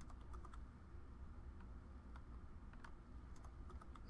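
Faint, irregular computer keyboard keystrokes, a scattered few clicks over a low hum, as tags are copied and pasted into a text editor.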